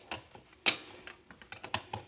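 Sharp clicks and ticks of a farrier's pincer-like hand tool working the nails and clenches of a freshly shod hoof. One loud click comes a little after half a second in, followed by a run of smaller ticks.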